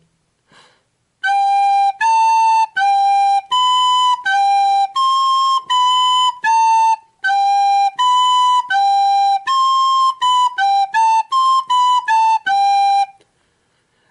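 Soprano recorder playing a slow beginner's étude in two-four time on the notes G, A, B and C, each note tongued separately. The notes come quicker near the end.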